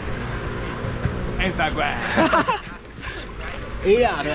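A group of young men's voices shouting and whooping, loudest about halfway through and again at the very end, over a steady low hum.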